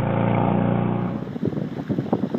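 A car engine running steadily for about a second. It then cuts abruptly to wind buffeting the microphone, heard as irregular low rumbles and knocks.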